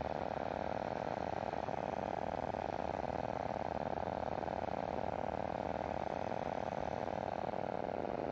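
Steady drone of an ultralight aircraft's engine and propeller, heard on board in flight, holding an even pitch and level throughout.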